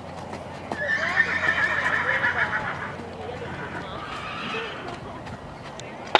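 A horse whinnies loudly: a high call about a second in that breaks into a quavering whinny for about two seconds, then a fainter second call about four seconds in. Hooves clip-clop on gravel as a horse is trotted.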